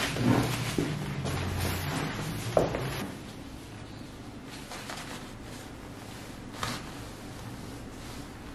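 A person rolling over from face down to face up on a massage mat covered with a paper sheet: paper rustling and body shifting, with a bump about two and a half seconds in. After that the rustling stops and only faint room noise remains, with one small click later on.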